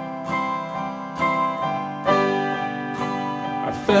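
Acoustic guitar strummed in chords, a new strum roughly once a second.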